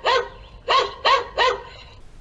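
Recorded dog barking played as a security camera's barking-dog deterrent sound: one bark at the start, then three quick barks in a row.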